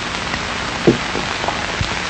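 Steady hiss and crackle of an old archival film soundtrack, with a faint short sound about a second in.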